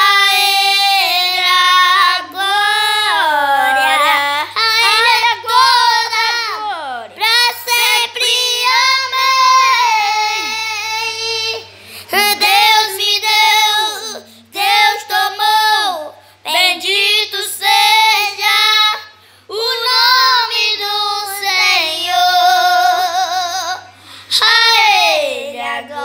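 Two children singing a worship song unaccompanied, in phrases of held and sliding notes with short breaths between them.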